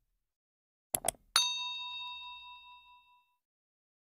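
Subscribe-animation sound effect: two quick mouse-style clicks, then a single bright bell ding for the notification bell that rings out and fades over about two seconds.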